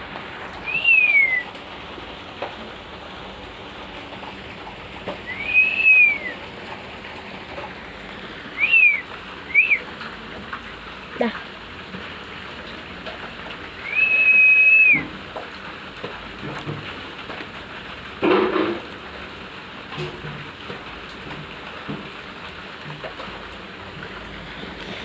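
A handful of clear, high whistled notes over a steady hiss: one falling note about a second in, an arched one around six seconds, two short quick ones near ten seconds, and a longer held note around fifteen seconds. A brief louder noisy burst comes later.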